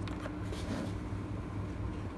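Steady low machine hum with a few faint clicks near the start.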